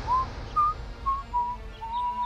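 A person whistling a short tune: five brief notes at about the same pitch, the last one held longer.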